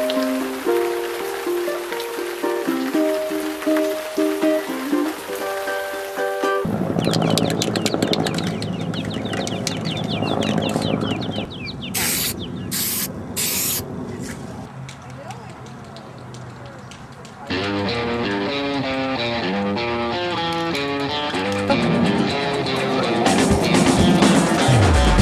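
Background music, changing tune about a quarter of the way in and again past the middle. Just before the music switches the second time, an aerosol spray can gives three short hisses in a row.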